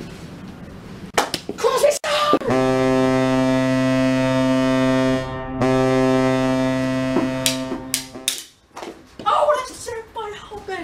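Hockey goal horn sounding for a goal: one deep, steady horn tone lasting about six seconds, with a brief dip midway. It is preceded by a few sharp knocks.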